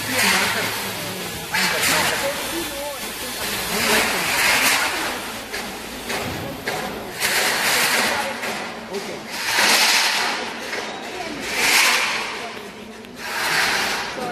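Indistinct talk among several people, broken by repeated loud bursts of hissing noise every one to three seconds.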